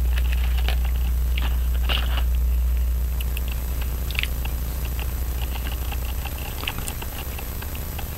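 Small, scattered clicks and taps of a screwdriver and other small tools being picked up and handled against a pocket watch movement and its metal holder, over a steady low hum that fades out about six seconds in.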